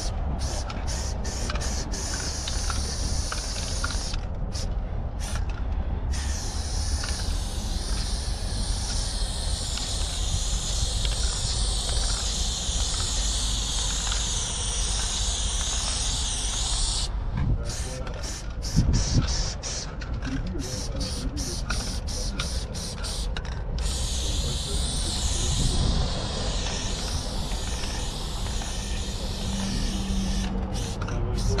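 Aerosol spray-paint can hissing as it sprays a wall in long continuous passes, broken twice by spells of short rapid bursts, about a quarter of the way in and again just past the middle. A knock just past the middle is the loudest moment.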